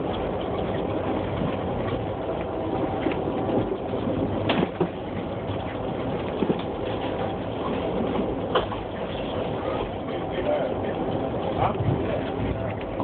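Steady road and engine noise heard from inside a moving car, with a couple of short knocks, about four and eight seconds in.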